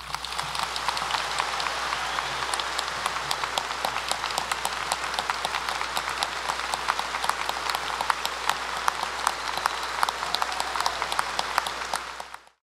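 A large audience applauding: many hands clapping in a dense, steady wash. It swells up within the first half-second and holds at the same level throughout.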